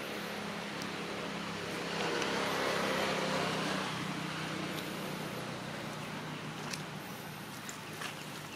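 A motor vehicle passing in the background, its noise swelling about two seconds in and fading away by about five seconds, over a steady low engine hum. A few light crackles of dry leaves come near the end.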